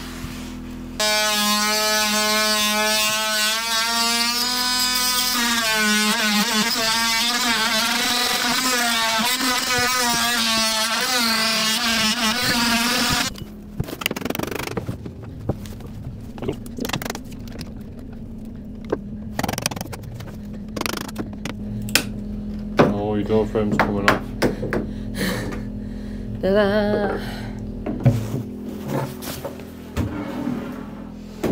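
Oscillating multi-tool running for about twelve seconds, its buzz wavering in pitch as the blade bites into the wood of the engine bearers, then cutting off suddenly. After it, a run of sharp hammer blows on a chisel, knocking the high spots off the bearers.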